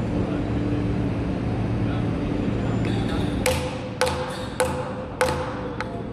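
Mallet knocking a round wooden patch plug into a drilled hole in a timber board: four sharp knocks about half a second apart starting about halfway through, then a lighter fifth, each with a short ring. A steady low hum underlies the first half.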